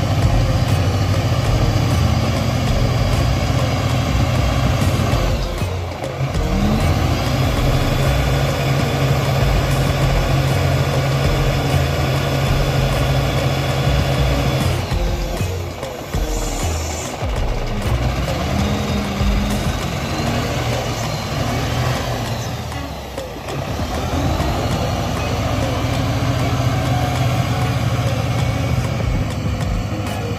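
Caterpillar wheel loader's diesel engine working under load as it digs and lifts soil. The revs drop and pick up again three times: about six seconds in, just past halfway, and about three-quarters through.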